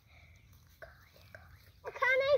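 Mostly quiet background with a few faint soft clicks, then a voice starting to call just before the end.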